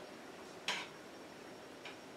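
Two light clicks about a second apart, a utensil knocking against a saucepan as water and grated soap are stirred, over faint room tone.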